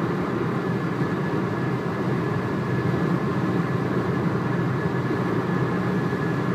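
Steady low rumble of a running car heard from inside its cabin, with no other sounds standing out.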